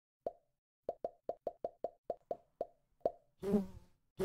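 Intro sound effects for an animated logo: a string of about eleven short, pitched plops, irregularly spaced and bunched in the middle. Near the end comes a longer pitched sound.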